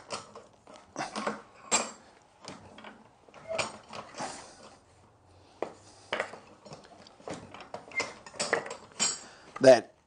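A timber block with a taped-on template being handled and clamped in a bench vise: scattered wooden knocks and clicks, with a louder knock near the end.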